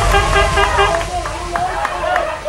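Several voices shouting and calling over one another at a football match, over a steady low rumble.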